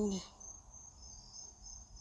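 Faint, steady high-pitched insect trilling; a woman's voice trails off at the very start.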